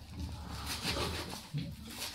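Faint rustling and crackling of fresh leafy greens being picked over by hand and dropped into a metal pan.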